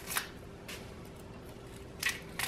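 Dry, papery Vidalia onion skin crackling as it is peeled off by hand: a short rustle just after the start and another under a second in.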